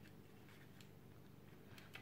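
Near silence: room tone, with a faint click about a second in and another near the end.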